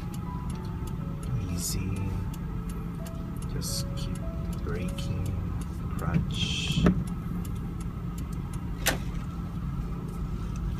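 Steady engine and road noise heard inside the cabin of a slowly driven car on a wet road. Scattered light clicks and a few brief hissing swishes run through it. Soft background music notes sit over it.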